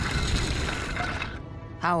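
Cartoon sound effect of a pointed metal staff tip scraping a line through grass and earth: a rough scrape that lasts about a second and a half and fades, over background music.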